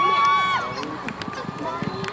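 Spectators yelling encouragement, with one long, high drawn-out shout at the start that fades within the first second. Beneath it come thuds at about three a second from the galloping horse's hooves on the arena dirt.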